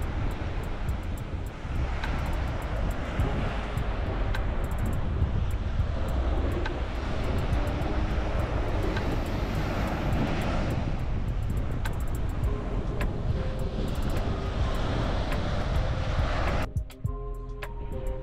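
Strong wind buffeting the microphone, a loud rumbling rush over the wash of waves on the beach. It cuts off suddenly near the end and background music takes over.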